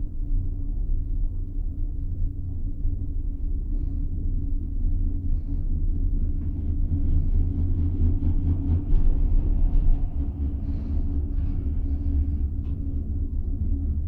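Steady low rumble of a moving monocable gondola cabin, heard from inside the cabin. It grows slightly busier and louder around the middle as the cabin passes a tower and rolls over its sheaves.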